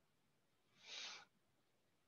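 Near silence with a single short, soft breath from the lecturer about a second in.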